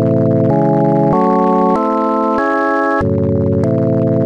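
LMMS TripleOscillator software synth playing an arpeggio of stacked minor chords from one held note, with a sustained organ-like tone. Each chord lasts about half a second and steps upward; about three seconds in it drops back to the lowest chord and starts climbing again. This is the pattern of chord stacking combined with an upward minor-chord arpeggio.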